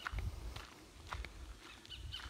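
Faint low rumble of a vehicle rolling slowly along a dirt track, with a few soft knocks.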